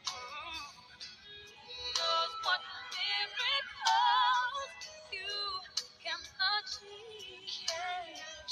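Music: a high female voice singing held notes with a wide vibrato, over a light accompaniment.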